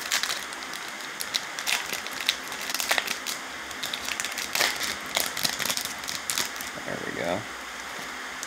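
Foil wrapper of a Topps Chrome baseball card pack being torn open and crinkled by hand, with irregular crackles as the stack of cards is slid out.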